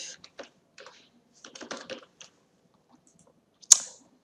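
Typing on a computer keyboard: a run of light key clicks, most of them between about one and a half and two and a quarter seconds in. Near the end comes one louder, sharper click.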